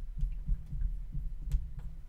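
Marker writing on a glass lightboard, heard mostly as soft low thuds and taps as the strokes are made, with one sharper click about one and a half seconds in.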